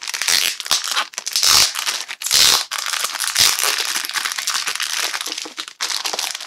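Clear plastic wrap around a pack of comic books crinkling loudly as hands pull and peel it off, with louder rustles about a second and a half and two and a half seconds in.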